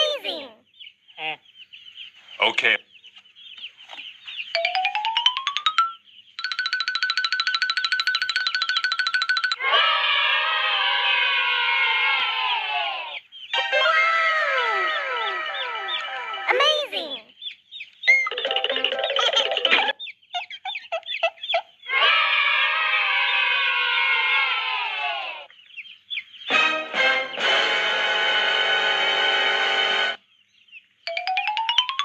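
Cartoon-style sound effects over background music. A rising glide comes about five seconds in, followed by stretches of steady buzzing tones and repeated falling glides, broken by brief gaps.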